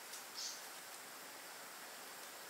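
Faint steady background hiss with a brief soft rustle about half a second in, from baby's breath stems and floral tape being handled while a flower crown is bound.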